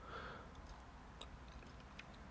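Near silence: faint room tone with a few soft, light clicks.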